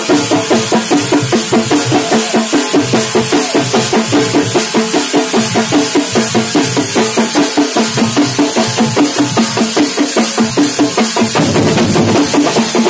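Thambolam percussion ensemble: large double-headed drums beaten with curved sticks, together with clashing metal hand cymbals, playing a fast, even beat. Near the end the drumming thickens into a denser roll.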